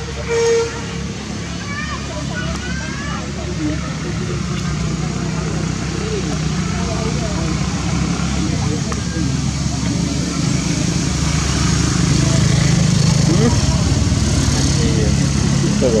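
Motor vehicle engine running as a steady low hum that grows louder over the first dozen seconds. A short horn toot sounds about half a second in.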